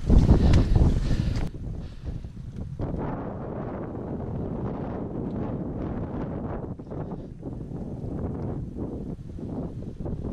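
Wind buffeting the microphone, loud for about the first second and a half and then softer, with irregular soft crunches of footsteps in fresh snow.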